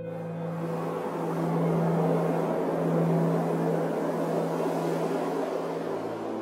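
A geyser erupting: a steady rushing roar of steam and water jetting out. Under it runs a low, sustained music drone.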